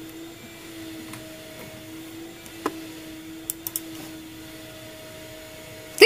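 A steady mechanical hum holds one pitch with a fainter overtone above it. A sharp click comes about halfway through, and a few small clicks follow shortly after.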